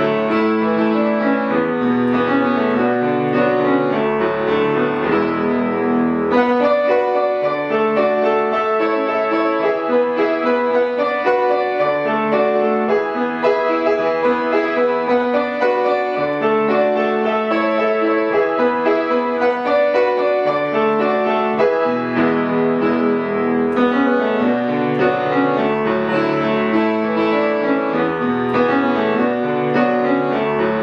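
Ibach boudoir grand piano played without a break: chords with a running melody over held bass notes at an even level. The piano is in good playing order, by the seller's account.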